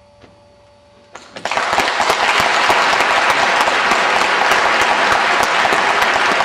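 The faint tail of the symphonic band's final held note, then audience applause breaking out about a second in and going on strongly.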